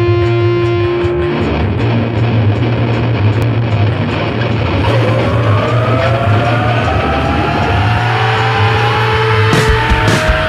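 Rock band intro with loud distorted electric guitar over a steady low bass: a held note gives way to a slowly rising, gliding guitar line. Sharp drum hits come in near the end.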